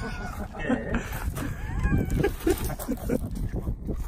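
People laughing and exclaiming in short, rapid bursts, with a low rumble of wind on the microphone.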